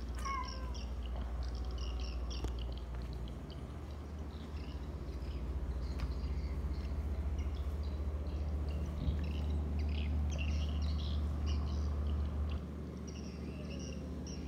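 A domestic cat meows once near the start, a short call that bends in pitch, while birds chirp in the background throughout.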